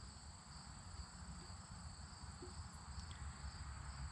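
A steady chorus of field insects shrilling on two high pitches, with a low rumble underneath.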